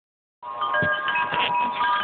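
Wind chimes ringing in the wind: several clear metallic tones at different pitches overlap and sustain, starting about half a second in.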